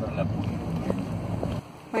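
Steady low rumble of a car's road and engine noise heard from inside the cabin while driving, cut off abruptly about a second and a half in.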